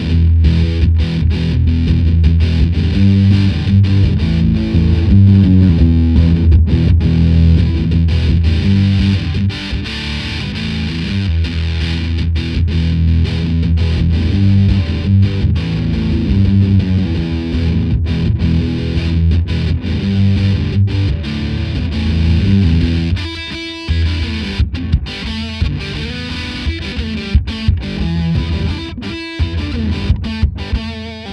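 Electric guitar on a Stratocaster bridge pickup, played through the Electro-Harmonix Sovtek Deluxe Big Muff Pi's Green Russian fuzz circuit into a Fender Silverface Super Reverb amp. It plays loud, thick, fuzz-distorted riffs with heavy low end. Near the end come short gaps between choppier phrases.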